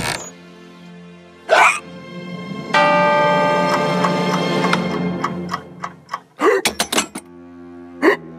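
A cartoon bear hiccups twice, then a twin-bell alarm clock rings for about three seconds over background music. A quick run of sharp knocks follows near the end.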